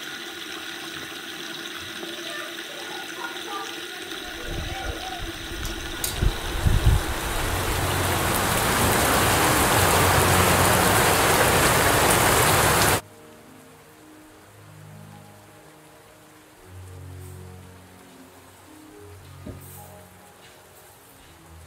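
Running water from a tap, a steady rushing noise that swells louder for about thirteen seconds and then cuts off suddenly. After that, quiet music of slow, low held notes.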